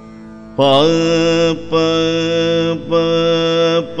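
Male Carnatic vocalist singing the swara "pa" in raga Shankarabharanam. Three held notes of about a second each, all at one steady pitch, start about half a second in over a steady drone.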